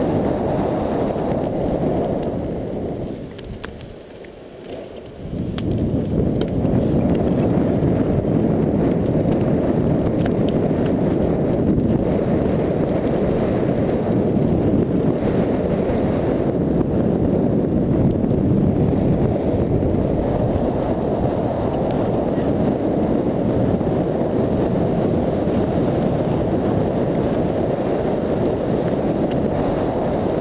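Steady low rush of wind and rolling noise from a blokart land yacht running over beach sand, sounding muffled. It drops away for about two seconds around four seconds in, then comes back as before.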